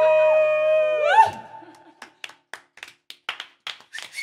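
Two voices holding the final sung note of a song in harmony over a sustained chord, breaking off with a short vocal flourish about a second in. Then a few people clapping, a sparse run of separate hand claps.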